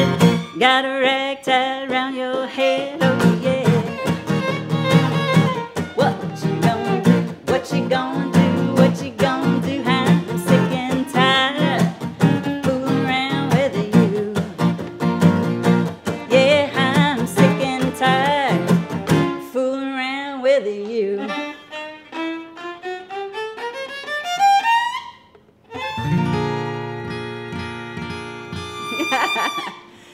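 Acoustic guitar strummed in a steady rhythm with muted-string chops, a fiddle playing along and a woman singing. About two-thirds of the way in the strumming stops and the fiddle slides upward in a rising run, then the duo ends on a held final chord that cuts off just before the end.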